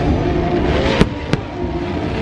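Fireworks: two sharp bangs about a third of a second apart, near the middle.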